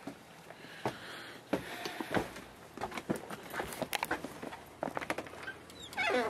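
Soft, irregular footsteps with scattered small clicks and knocks, someone moving quietly on a wooden deck.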